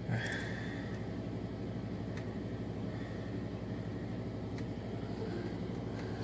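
Steady rain falling, an even hiss with a low, constant rumble underneath and a couple of faint ticks.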